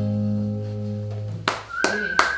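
The last acoustic guitar and saxophone chord rings out and fades, then about one and a half seconds in the audience starts clapping, with a held high tone joining the claps near the end.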